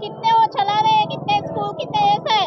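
A woman's voice speaking, with a drawn-out syllable near the middle.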